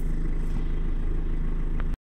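Steady low engine drone heard from inside the converted bus's cabin, typical of the coach's engine idling, with a faint click near the end.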